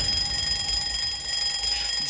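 An alarm clock sound effect in a song's instrumental backing track: a steady, high ringing tone with no singing over it.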